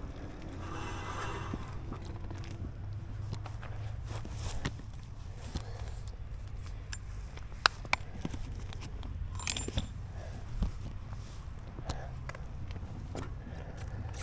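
Scattered clicks, knocks and scrapes of a camera being picked up and handled, over a low steady rumble.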